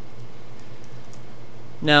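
A few faint computer keyboard key clicks, spaced irregularly, over a steady low electrical hum.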